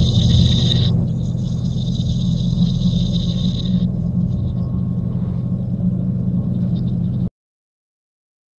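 Steady low drone, with a high ringing tone above it that stops about four seconds in; the whole sound cuts off suddenly about seven seconds in.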